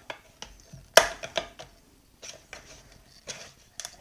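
A thin metal tool prying at the lid of a metal can: scattered metallic clicks and scrapes, the loudest a single sharp click about a second in.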